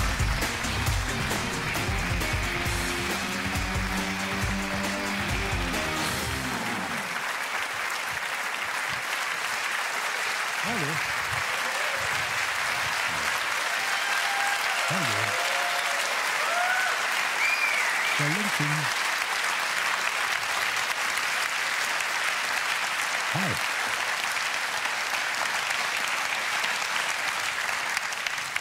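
Audience applauding steadily and at length, with a few cheers. Stage intro music plays under it and ends about seven seconds in.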